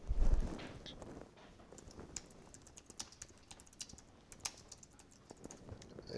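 A low thump at the start, then faint, irregular keystrokes on a computer keyboard as a web search is typed.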